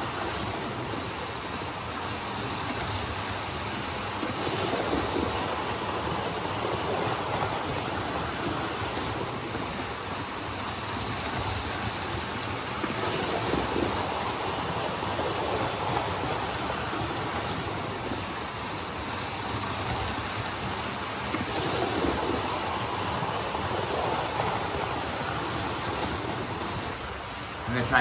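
00 gauge model Class 73 and Class 153 trains running together on a layout: a steady whirring rush of their motors and wheels on the track, swelling and easing a little.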